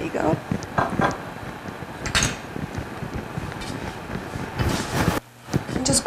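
Metal rolling pin rolling out pizza dough on a board, a steady rubbing rustle with a few soft knocks as a metal cake pan is handled and greased.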